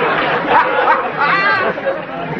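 Background chatter of many overlapping voices, with one voice standing out briefly about a second and a half in.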